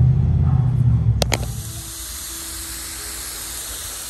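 Garden sprayer wand misting water over potted succulent seedlings: a steady hiss of spray that starts after two sharp clicks a little over a second in. A low rumble fills the first second or so.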